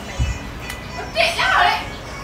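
A child's voice calls out loudly and high-pitched for under a second, starting about a second in, with children's voices in the background. A low, dull thump comes just after the start.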